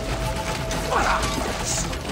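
A ratcheting mechanism clicking, with film score music underneath.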